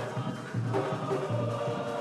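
Kumina music: a chorus of voices singing together over a steady drumbeat, about two strokes a second.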